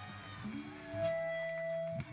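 Live band music with long held notes over a low bass line.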